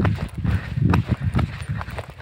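Footsteps of the person filming, walking on an asphalt road, picked up as low thumps close to the phone's microphone, about two steps a second.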